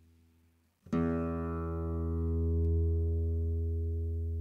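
Guitar improvisation: a held note dies away almost to silence, then a low note or chord is plucked about a second in and rings on, fading slowly.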